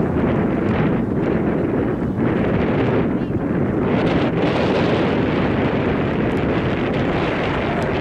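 Wind buffeting the camera microphone: a loud, steady rumbling rush that cuts in suddenly at the start and holds without a break.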